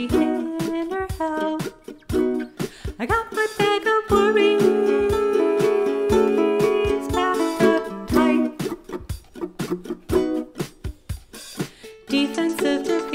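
Ukulele music: an instrumental passage of a song, the ukulele strummed in quick strokes over changing chords, with no singing.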